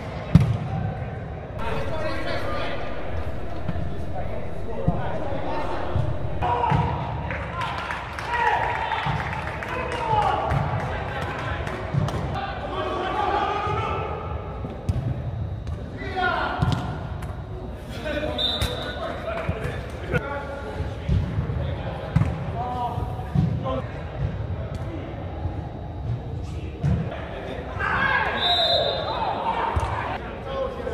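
Soccer players shouting and calling to each other in a reverberant indoor hall, with repeated thuds of the ball being kicked; the loudest kick comes right at the start.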